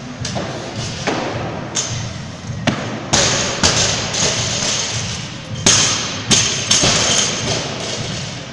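Barbells loaded with bumper plates dropped to the gym floor after squat cleans: a series of heavy thuds, the loudest about five and a half and six seconds in.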